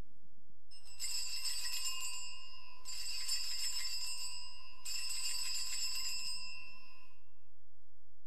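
Altar bells (sanctus bells) rung in three shakes at the elevation of the host, each a jingling ring of several high tones, the last dying away about seven seconds in.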